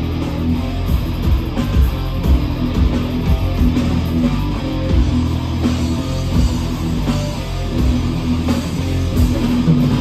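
Heavy metal band playing live: distorted electric guitars on a repeated riff over bass and a drum kit, with no vocals.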